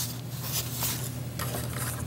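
Black construction paper being folded and handled by hand: faint rustling with a few soft ticks, over a steady low hum.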